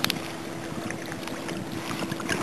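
Outdoor background: a faint steady hum under wind noise on the microphone, with a brief sharp click at the very start.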